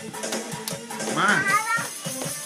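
Music with a steady beat playing. About a second in, a young child gives a high-pitched squeal that lasts under a second.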